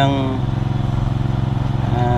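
A small engine running steadily with an even low hum, while a man's voice trails off in the first half-second.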